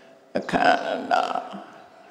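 A man's voice through a microphone: a short, low vocal sound starting about a third of a second in after a brief pause and trailing off before the end.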